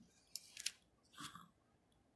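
Near silence, broken by two faint short clicks, about a third and two-thirds of a second in, and a softer faint sound just past a second.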